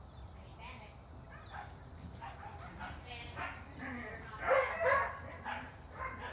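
A dog vocalizing in a series of short pitched calls that build to the loudest ones about four and a half seconds in.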